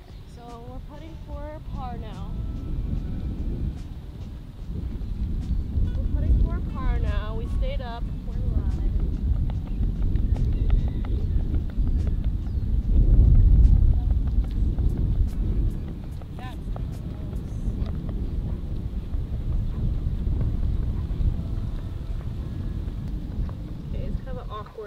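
Wind buffeting the microphone: a rough, fluctuating low rumble that swells and is strongest a little past the middle.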